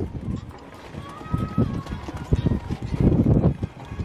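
A show-jumping horse lands from a fence right at the start, then canters on a sand arena, its hoofbeats coming as groups of dull thuds.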